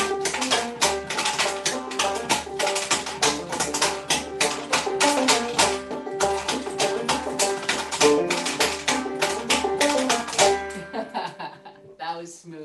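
Open-back banjo playing a lively tune while wooden limberjack dancing figures clatter rapid steps on a paddle board in time with it. The tune and the clattering end about eleven seconds in.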